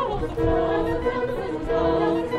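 Background music: a choir singing held notes in a classical style, with orchestral accompaniment.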